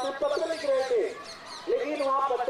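A person talking, with birds chirping in the background.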